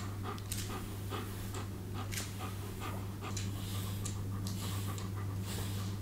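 Long-coated German Shepherd panting, about two breaths a second, while a grooming brush is drawn through its coat, over a steady low hum.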